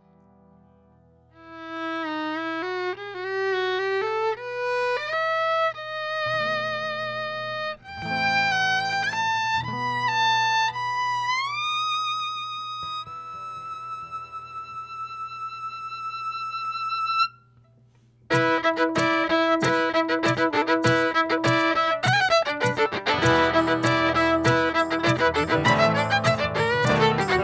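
Solo fiddle playing a slow intro with slides and vibrato over a low sustained note. About 17 seconds in it stops briefly, and then the full acoustic band comes in: fiddle over strummed guitars and electric bass.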